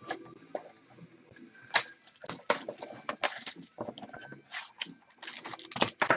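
Trading cards handled and flicked through in the hands: a string of irregular sharp clicks and light snaps, with faint rustling between them.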